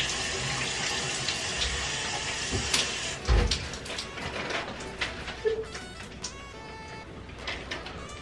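Shower running, a steady hiss of spraying water, that gives way about three seconds in to a heavy low thump and then scattered knocks and clicks.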